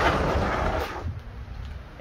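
Heavy plywood bed slide rolling out over one-inch roller bearings: a loud rolling noise that fades out about a second in.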